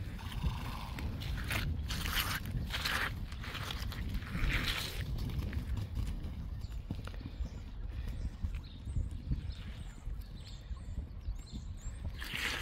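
Yearling Friesian horses moving loose on a sand arena: soft hoofbeats on the sand, with a few short breathy bursts in the first five seconds.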